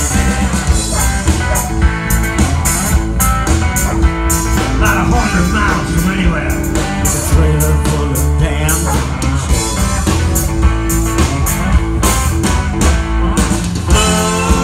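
Live blues-rock band playing an instrumental passage: guitar lines over a steady drum beat, with no vocals.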